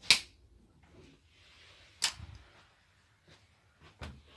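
Two sharp clicks about two seconds apart, the second followed by a soft thud, then a fainter click near the end.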